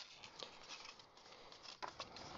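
Faint handling of a folded cardstock treat box: soft paper rustle with a couple of light ticks, one about half a second in and one near the end.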